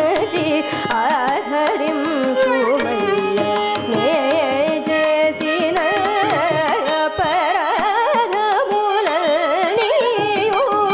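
Carnatic vocal music: a woman singing a melodic line that wavers and slides in pitch, with a violin shadowing the melody, frequent mridangam drum strokes and a steady tanpura drone.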